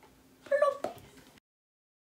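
A single short, high, meow-like cry about half a second in, then the sound cuts out to dead silence.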